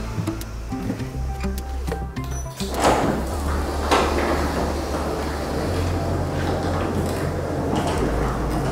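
Motorized sectional garage door opening: a couple of clunks about three seconds in, then the steady running of the opener and the moving door, over background music.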